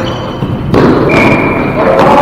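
A single loud thud from play in a gymnasium about three-quarters of a second in, ringing on in the hall, followed by a brief steady high tone.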